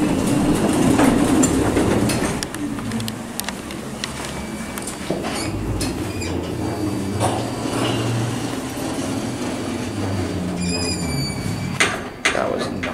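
Hydraulic elevator's sliding car and hall doors rumbling open at the start, the car standing with its doors open, then the doors rolling shut and closing with a knock at the very end. A short high tone sounds just before they close.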